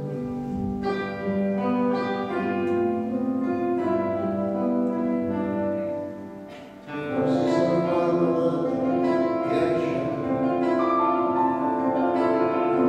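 Live concert music from the stage, with a grand piano among the instruments playing sustained notes. It softens briefly about two-thirds of the way through, then comes back fuller and louder.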